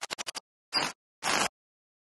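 Intro sound effect: a quick flurry of about seven clicks, then two short scratchy noise bursts, half a second apart, with silence between.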